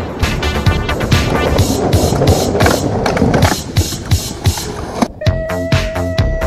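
Skateboard wheels rolling over street asphalt under music with a steady beat. The rolling cuts off about five seconds in, leaving the music with a held note.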